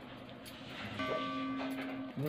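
Notification-bell chime sound effect: a few faint clicks, then a ringing bell tone from about a second in that holds steady.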